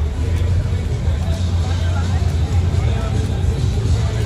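Night street ambience: a steady low rumble, likely a nearby vehicle engine, under background voices and faint music.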